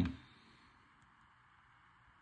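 The end of a spoken "um", then faint, steady room hiss with nothing else clearly heard.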